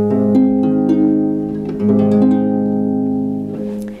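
Harp playing a six-note rolled chord, three fingers in each hand, practised staggered with the hands interlocking, then rolled again normally about two seconds in. The notes enter one after another and ring together until they are damped shortly before the end.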